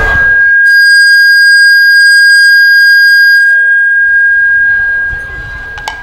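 Public-address microphone feedback: a loud, steady high-pitched squeal held on one unwavering pitch, thinning out about halfway and dying down near the end, with a couple of clicks as it stops.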